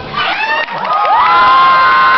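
Audience cheering and screaming, with high shrieks that rise in pitch and then hold, getting louder about a second in.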